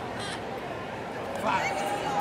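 Steady background noise of a live audience in a large hall. About one and a half seconds in, a person's voice lets out a rising, drawn-out shout or call.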